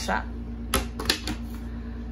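A few quick, sharp clicks about a second in, like keystrokes on a laptop keyboard, over a steady low hum.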